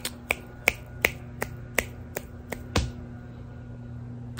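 Fingers snapping in a quick, even run of about nine snaps, roughly three a second, stopping near three seconds in.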